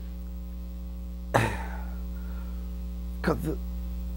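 Steady electrical mains hum from the sound system or recording chain, with one short, sharp sound about a second and a half in and a single brief spoken word near the end.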